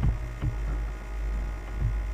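Steady electrical mains hum with a few soft, short thumps, one at the start, one about half a second in and one near the end.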